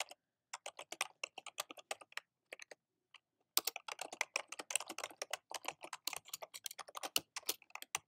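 Typing on a computer keyboard: a quick run of key clicks that stops briefly about three seconds in, then picks up faster.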